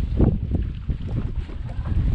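Wind buffeting the microphone in an uneven low rumble, with a few brief knocks.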